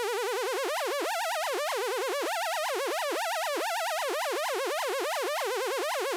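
Xfer Serum wavetable synthesizer holding one sawtooth note, its pitch wobbling irregularly up and down as the Lorenz chaos oscillator modulates the oscillator's coarse pitch. The wobble is slight at first and deepens about half a second in, never repeating exactly.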